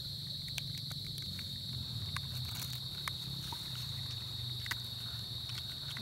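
Steady high-pitched chirring of night insects, with a low steady hum beneath and a few faint clicks from hands working a net crab trap.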